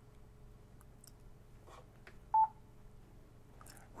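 A single short beep, about halfway through, from a Yaesu FTM-500D mobile ham transceiver: its key-press confirmation tone as the knob is pressed to step through the SD card backup menu. Faint clicks of the radio's controls come before it.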